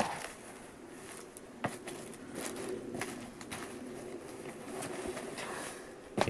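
Cardboard box rustling and creaking as a person climbs into it and lies down, with a sharp knock at the start and scattered lighter knocks and scrapes after it.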